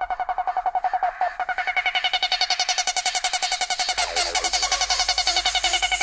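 Hard dance music at a breakdown: the kick drum has dropped out, leaving a fast, evenly pulsing synth riff, with a low bass layer coming back in about four seconds in.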